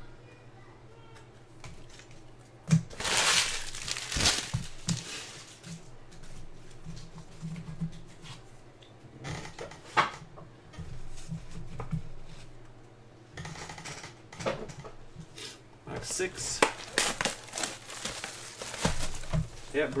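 Trading cards being handled and a plastic card-pack wrapper crinkling, in noisy bursts of a second or two several times, over a low steady hum.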